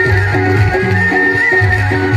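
Live Chhattisgarhi stage-band music without singing: a dholak-type hand drum beating a steady repeating rhythm under a held, slightly bending high melody line.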